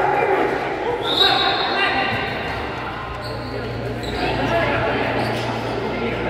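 Futsal ball thudding as it is kicked and bounces on the hard court, with players shouting to each other.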